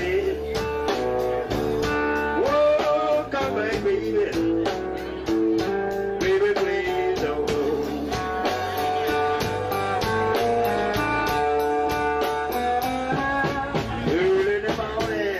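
A live blues band plays an instrumental passage: a resonator guitar leads with bent notes over bass and drums keeping a steady beat.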